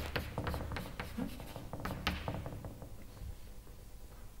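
Chalk on a blackboard: a quick run of sharp taps and short scratches as lines are drawn, busiest over the first two seconds and then sparser and fainter.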